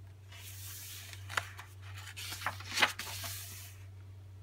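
A page of a hardcover picture book being turned by hand: a soft paper rustle lasting about three seconds, with a few light clicks as the page is handled.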